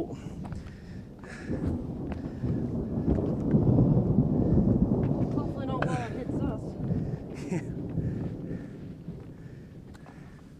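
Thunder rolling from a nearby storm: a low rumble that builds a few seconds in, peaks, and fades out over several seconds.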